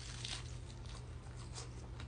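Someone biting into a chicken quesadilla and starting to chew, a few soft crackles over a steady low hum.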